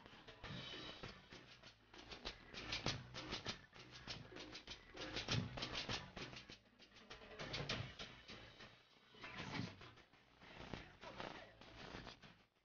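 Live tropical dance band music, carried by a steady percussion rhythm, heard faintly.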